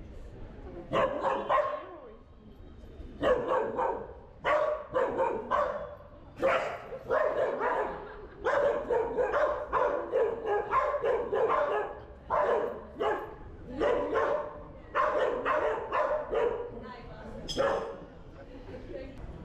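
A dog barking over and over, in runs of short, sharp barks.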